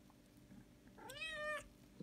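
Domestic cat meowing once, about a second in: a short call that rises in pitch and then holds.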